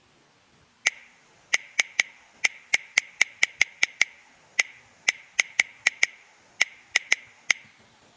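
Android on-screen keyboard key-press clicks: short, sharp ticks, one per letter typed, about twenty in an uneven typing rhythm with brief pauses between words.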